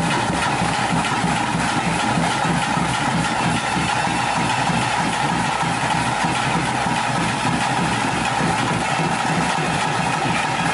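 Ritual percussion playing a dense, steady, fast rhythm with a sustained droning tone above it.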